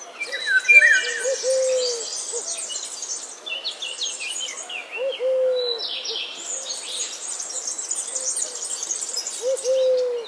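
Birds calling: groups of low, arched hooting notes, with a dense chorus of high chirps and trills.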